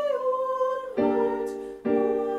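Choral anthem with keyboard accompaniment: a held sung note gives way about a second in to a struck chord that rings and fades, and another chord is struck near the end.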